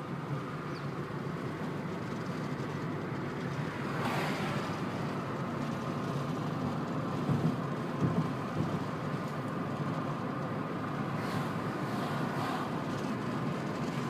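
Steady road noise inside a moving car: engine and tyres humming, with a brief swell about four seconds in and a small bump near eight seconds.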